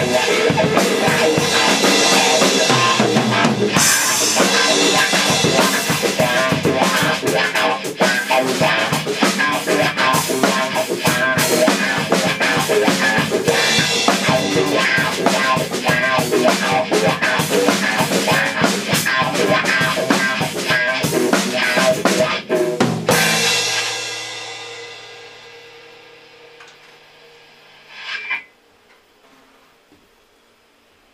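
Rock band jam: a drum kit played hard with an amplified guitar. About 23 seconds in the playing stops and the last held notes ring out and fade away, with a brief noise near the end.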